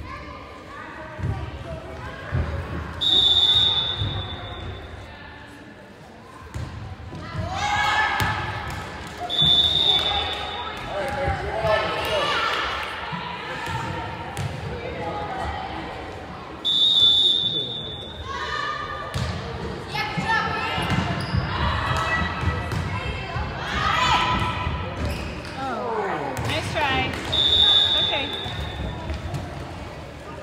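A referee's whistle blows four short blasts several seconds apart, signalling serves and the ends of rallies in a volleyball match. Between them the ball is served and hit with sharp smacks, and players and spectators call out and cheer, all echoing in a gymnasium.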